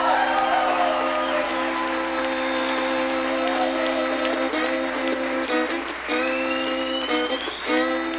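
A bluegrass band of banjo, fiddle, acoustic guitar, mandolin and upright bass playing live, with audience applause over the held notes in the first half. After that the instruments play on in short, broken notes, and a rising glide is heard toward the end.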